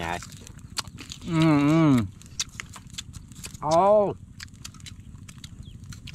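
A man's two drawn-out, wavering wordless exclamations, about a second in and again near four seconds, as he savours sour, spicy tamarind. Between them, a small wood fire gives faint scattered crackles.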